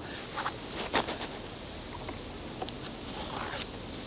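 Faint rustling and scraping of a cord being pulled and knotted around a wooden pole over a canvas tarp, with a few short scrapes in the first second and small ticks after.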